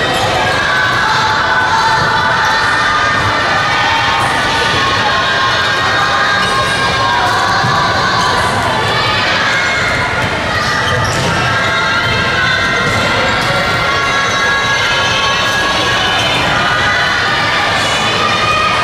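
Handballs bouncing and slapping on a wooden gym floor during a warm-up passing drill, under a continuous din of many girls' voices calling and shouting.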